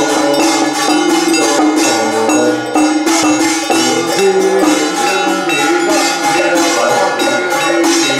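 Taoist ritual chanting over a steady beat of struck bells and percussion, several strikes a second, running without a break.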